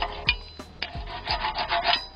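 A metal skimmer scraping and rubbing against the inside of a pot of melting lead, in a quick run of rasping strokes that grows louder toward the end.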